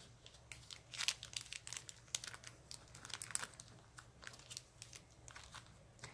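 A small clear plastic bag of craft embellishments crinkling faintly as it is handled and set into a plastic compartment box, with scattered light clicks and rustles.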